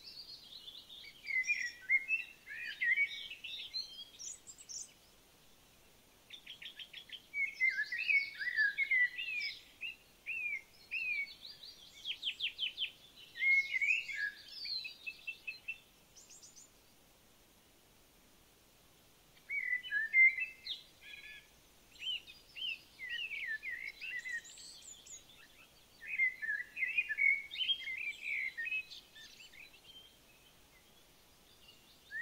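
Songbirds singing: high chirping phrases and quick trills that come in bursts, falling quiet for a couple of seconds twice.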